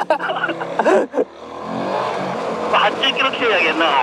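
Motorcycle engine accelerating, its pitch rising and the sound growing louder about a second in, with wind rush over the helmet microphone.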